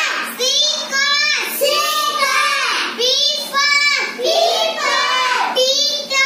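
A young girl's voice chanting single English letter sounds one after another in a phonics drill, a short sing-song syllable for each letter, in quick succession.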